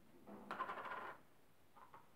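Plastic chemical jar and its lid handled on a tabletop: a clattering rattle lasting about a second, then a couple of light taps near the end as the jar and lid are set down.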